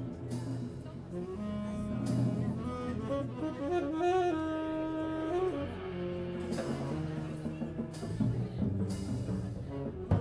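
A jazz trio plays a slow ballad: saxophone holds long melody notes over upright double bass, with a few soft cymbal swells from the drum kit.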